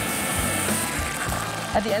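Rushing wash of surf and spray as a wave breaks over a boat's bow, under background music. A man's voice starts speaking near the end.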